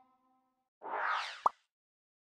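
Edited logo sound effect: a short whoosh starting a little under a second in, ending in a quick pop that glides upward in pitch. Before it, the last held notes of the background music die away.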